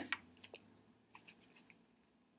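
A few faint, short clicks as a plastic stick pen and floral wire are handled and lined up together in the fingers.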